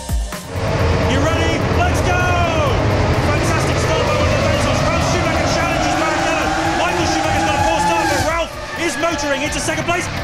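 A grid of 2002 Formula 1 cars' V10 engines revving and accelerating away together from a standing start, with pitches rising as they pull away. The sound drops in level about eight seconds in.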